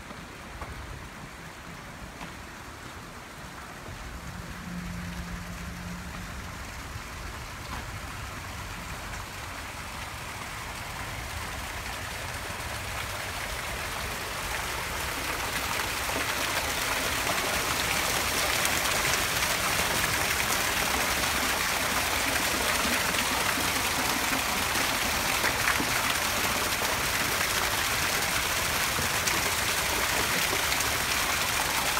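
Stone fountain, water spouting from carved mask mouths and splashing into its basin: a steady hiss of falling water that grows louder through the first half and then holds.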